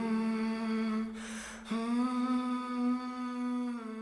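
A man humming one long, steady low note, stopping about a second in for a short breath and then picking the note up again slightly higher.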